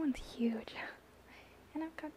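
A woman speaking softly and whispering a few words, with a short pause before her voice comes back near the end.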